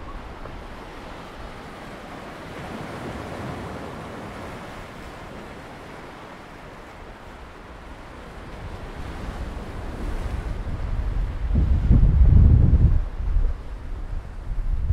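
Sea waves washing and breaking against the boulders of a harbour breakwater, a steady surf noise. Wind gusts buffet the microphone with a low rumble that builds in the second half and is loudest near the end.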